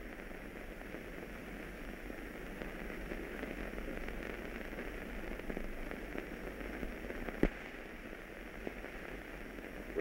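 Hiss and crackle of a worn 1930s optical film soundtrack, with a steady low hum and a single sharp click about seven and a half seconds in.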